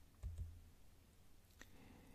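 Near silence in a room, broken by a faint low thump just after the start and a single faint click about a second and a half in.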